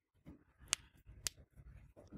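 Two faint, sharp clicks about half a second apart, over soft rustling.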